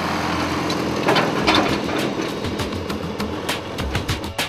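A small tractor driving past close by, its engine running with a lot of clattering, loudest about a second in.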